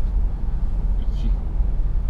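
Steady low rumble of engine and tyre noise inside a Mercedes sedan's cabin while cruising on a wet road.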